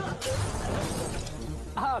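Crash sound effect of an auto-rickshaw smashing apart: a sharp smash at the start, then a noisy clatter of breaking debris that dies away over about a second and a half.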